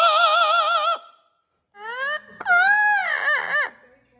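Yellow-headed Amazon parrot singing: a held note with a quick vibrato for about a second, a short pause, then a few upward-sliding notes and a long note that rises, falls and wavers before breaking off near the end.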